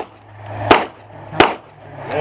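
Two shots from an FN FNP-9 9mm pistol, about 0.7 seconds apart, each a sharp crack with a short echo. They are the last shots of the string.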